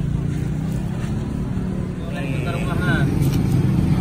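A motor vehicle's engine running steadily with a low hum. People talk in the background from about halfway through.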